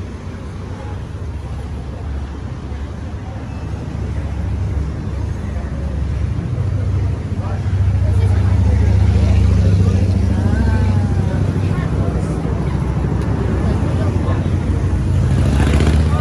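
Low rumble of street traffic, a motor vehicle running that grows louder toward the middle, with voices of passers-by faintly mixed in.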